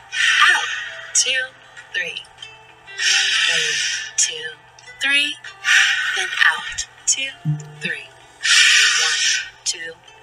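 A man taking slow, deep breaths close to the microphone: four long, hissing breaths about two to three seconds apart, the paced breathing of a relaxation exercise.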